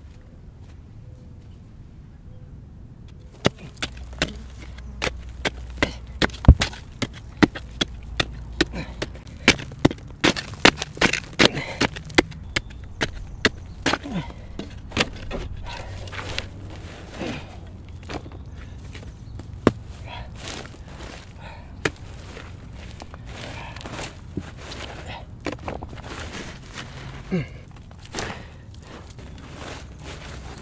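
A pointed digging stick jabbed again and again into hard, stony dirt, breaking it up: sharp irregular strikes, about two to three a second, begin a few seconds in and thin out later. Loose soil and pebbles scrape and crumble between the strikes.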